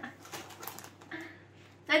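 Faint crinkling of foil crisp packets being handled, with a brief soft voice or stifled laugh about a second in.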